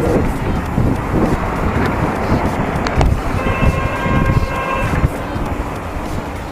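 Strong wind buffeting the microphone, a dense low rumble throughout. A sharp click comes about three seconds in, followed by a steady held tone of several pitches lasting about a second and a half.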